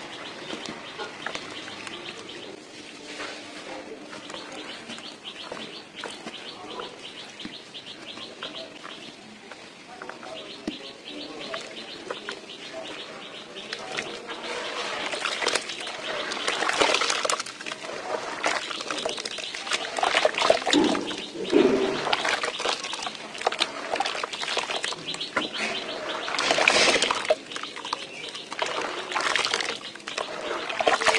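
Soaked pure-cement chunks crumbling and trickling into a tub of water, then hands sloshing and squishing the grey cement slurry, with louder splashing surges in the second half.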